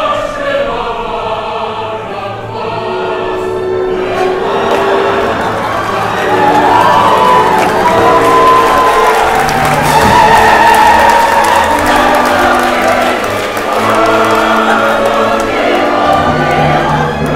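Opera chorus singing in full with orchestral accompaniment, growing louder about six seconds in and staying loud.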